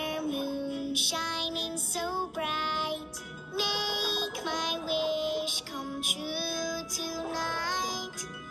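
A young girl's voice singing a lullaby over soft backing music, with several long held notes.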